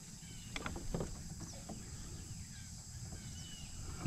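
Faint outdoor ambience: a steady high insect drone with a few short bird chirps, and a couple of light knocks about half a second to a second in.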